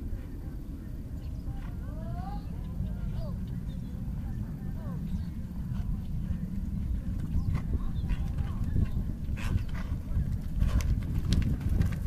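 Hoofbeats of a horse cantering on a sand arena, with a few sharp knocks in the last few seconds as it comes near, over a steady low rumble and faint distant voices.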